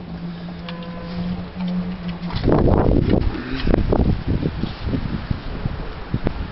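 A steady low hum for the first two seconds or so, then, suddenly, about two and a half seconds in, gusty wind buffeting the microphone.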